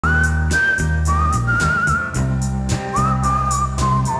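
A whistled melody line, wavering slightly in pitch, carried over a bass line and a steady tapping beat of about four taps a second, in a live band's intro.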